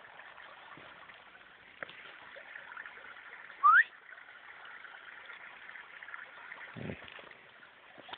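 Shallow water running over a stony path, a steady rushing trickle. About three and a half seconds in, one short, loud, rising whistle.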